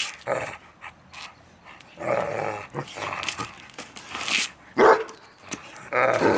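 Irish wolfhound giving play barks and growls in several short bursts, the sharpest bark a little before the end, while trying to get another dog to play.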